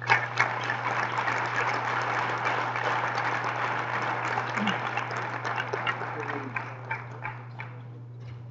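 Audience applauding: it starts abruptly, holds steady, then thins to a few scattered claps and stops near the end.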